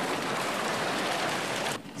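Steady rushing noise of tsunami floodwater sweeping away houses and debris, cutting off shortly before the end.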